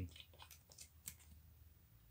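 Faint, scattered clicks and light scrapes of plastic-sleeved game cards being drawn and handled over a tabletop board.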